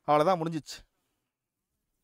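A man's voice speaking a few words during the first second, then near silence.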